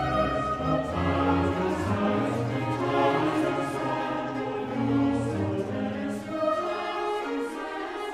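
Classical choral music: a choir singing with a string orchestra.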